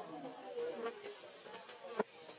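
An insect buzzing close by, its pitch wavering up and down, with a few light clicks.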